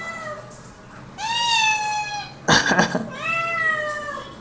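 Domestic cats meowing for food: a long meow about a second in, a short cry just after, and another long meow near the end.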